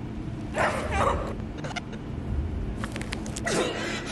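Short high whimpering cries, a few of them, with a brief run of clicks about three seconds in and a falling cry near the end.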